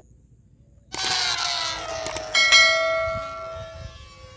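Rocket balloons let go and whistling as the air rushes out of their necks. One starts about a second in with a rush of air under a slightly falling ringing tone, and a second, louder whistle joins about halfway through, then fades.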